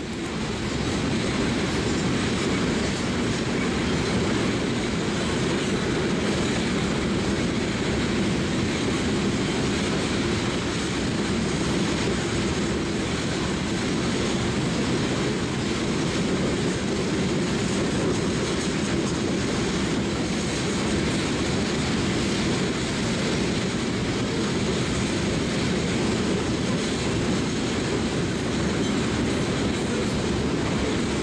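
Covered hopper cars of a sand train rolling past, a steady wheel-on-rail noise that holds even throughout.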